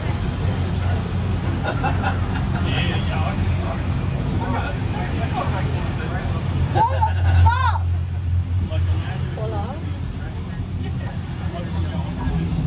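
Steady low rumble of a heritage passenger carriage running along the track, with passengers talking in the background. A brief high wavering sound rises and falls about seven seconds in.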